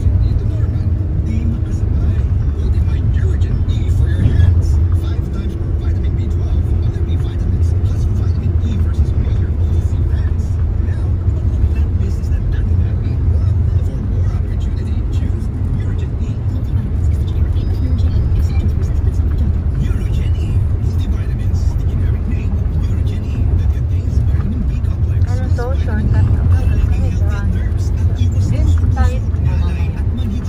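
Steady low rumble of engine and road noise inside the cabin of a moving car, with faint voices near the end.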